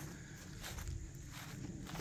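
Faint footsteps on the ground, a few soft steps over a steady low background noise.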